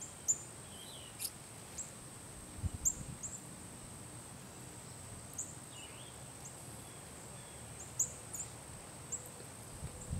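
Scattered short, sharp high bird chips, about a dozen in ten seconds, over a constant high-pitched insect-like whine, with a faint low thump about three seconds in.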